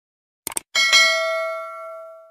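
A short click sound effect, then a bright bell ding that rings and fades away over about a second and a half: the stock click-and-bell sound of a subscribe-button and notification-bell animation.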